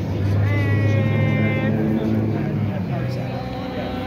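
Steady low hum of an idling engine. About half a second in, a person's voice calls out in one drawn-out note for over a second.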